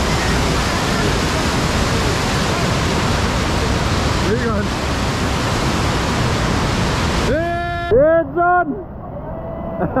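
Loud, steady rushing of whitewater churning in a waterfall's plunge pool. About seven seconds in it cuts off abruptly, and a short run of loud held pitched notes follows.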